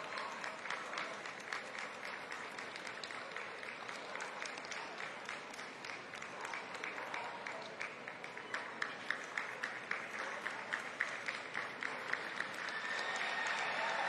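Ringside audience applauding steadily. From about eight seconds in, one nearby pair of hands claps louder in an even rhythm, about three claps a second.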